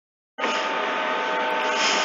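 Dead silence, then about half a second in a steady hum and hiss with several fixed tones cuts in abruptly and holds at a constant level.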